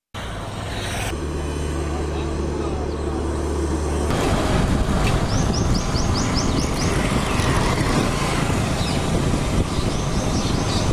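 Street sound with a motor vehicle engine running steadily, then louder traffic noise and indistinct voices from about four seconds in.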